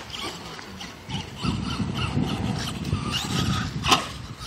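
Electric RC monster truck (RedCat Volcano EPX) driving on asphalt, its tyres and drivetrain rumbling from about a second and a half in, with a sharp knock near the end.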